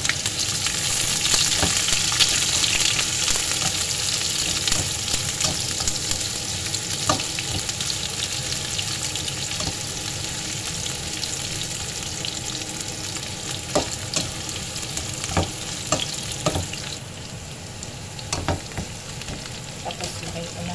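Sliced onions and garlic sizzling in hot oil in a frying pan, loudest just after the onions go in and slowly quieting, with occasional sharp clicks of a spatula stirring against the pan.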